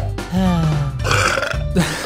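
A person burping once: a long, low burp that falls slowly in pitch, over background music.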